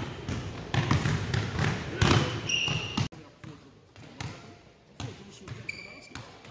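Basketballs bouncing on a hardwood gym floor in repeated dribbles, with two short squeaks of sneakers on the court. Everything turns quieter about halfway through.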